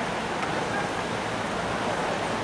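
Steady outdoor background noise with no drumming yet, and one faint click about half a second in.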